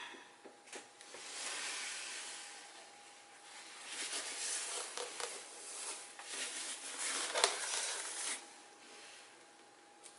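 Soft rubbing and squishing of a rubber balloon pressed and dragged through wet acrylic paint on a canvas, in two stretches with a few small clicks, the sharpest about three-quarters of the way through.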